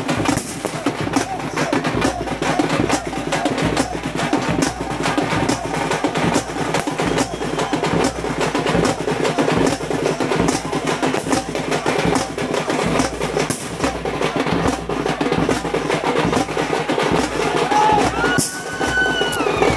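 Tamil folk drums played fast in a dense, continuous rolling beat, with crowd voices mixed in.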